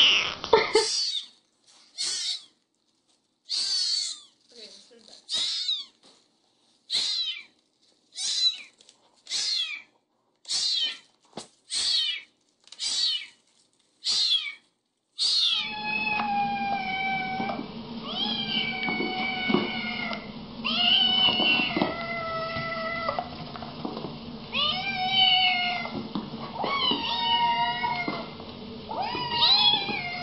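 A young kitten meowing over and over: about a dozen short, high meows with gaps between them. About halfway through, several Siamese kittens meow together, overlapping, over a steady low hum.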